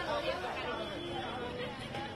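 Indistinct chatter of several people talking at once in a crowd.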